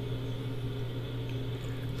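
Room tone: a steady low hum with faint hiss, no other events.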